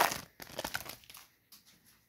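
Wrapper of a 2022 Topps Series 2 baseball card pack being torn open and crinkled by hand. It is loudest at the start, trails off into a few faint crinkles over the first second or so, and ends with a light click about a second and a half in.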